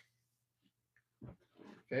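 Quiet room with a faint steady hum; a soft click at the very start, then a man's short breathy grunt as he reaches across the desk, running into a mumbled 'okay' near the end.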